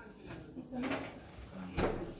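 Kitchen clatter: a single sharp knock near the end, like a cupboard door, drawer or pot being set down, with quiet talk underneath.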